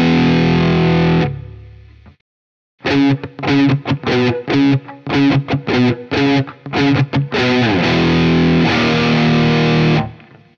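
Distorted Gibson ES-335 electric guitar tuned to drop C♯, playing the chorus riff alone. A held chord rings and fades to silence about two seconds in. Then comes a run of short, clipped notes in a stop-start rhythm, and near the end a downward pitch glide into a second held chord.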